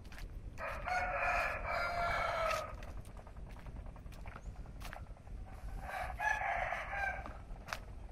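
A rooster crowing twice, each crow about two seconds long, a few seconds apart.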